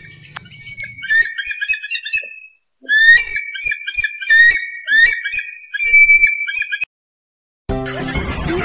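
A bald eagle's high, whistled chattering call: several bursts of quick, short notes that break off about a second before the end. Music starts right at the end.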